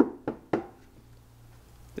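A hand tapping on a van panel coated with LizardSkin spray-on sound deadener: three quick knocks, about four a second, stopping about half a second in.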